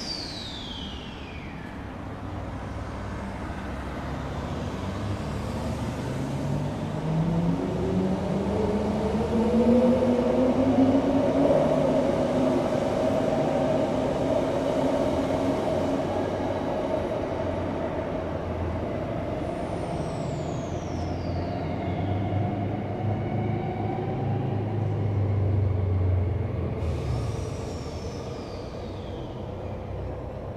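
Transperth A-series two-car electric train pulling away from the platform. Its drive gives a whine that rises steadily in pitch for several seconds as it gathers speed and then levels off, over the rumble of the wheels on the track. A few brief high tones sweep down in pitch along the way.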